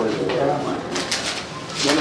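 People talking back and forth at close range, in a lively office conversation.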